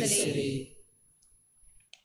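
Voices of the liturgy end about half a second in and die away in the church's echo, leaving near silence with a few faint clicks near the end.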